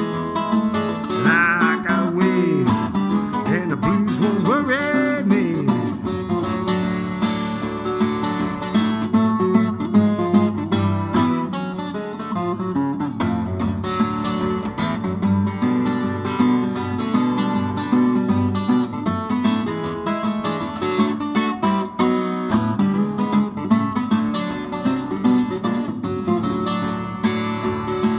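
Instrumental break of a country blues on a twelve-string acoustic guitar, fingerpicked over a steady bass beat. It has several sliding, bending notes in the first few seconds.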